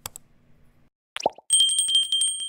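Subscribe-button animation sound effects: a click, a short rising pop a little over a second in, then a small bell dinging rapidly, about ten strokes a second, for the notification bell.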